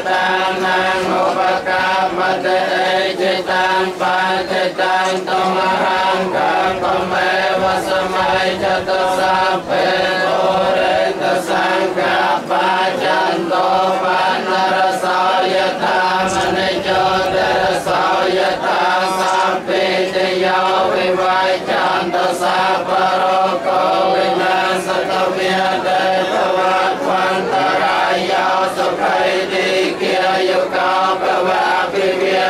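A group of Buddhist monks chanting in unison, a continuous, even-pitched recitation with many voices blended together, as a blessing over the monks' meal offering.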